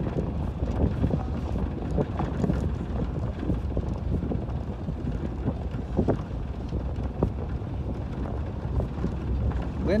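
A vehicle driving along a rough, broken dirt road: steady low rumble of engine and tyres, with wind buffeting the microphone.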